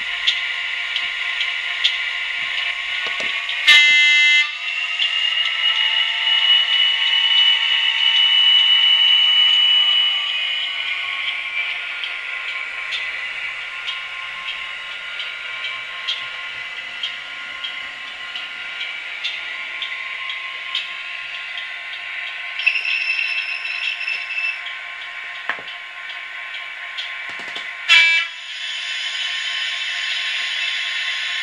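Class 67 diesel engine sound from a DCC sound decoder, played through a model locomotive's small speaker as it runs. The engine note rises in pitch from about 5 s to 10 s, then settles. There are loud horn blasts about 4 s in, around 23 s and again near 28 s.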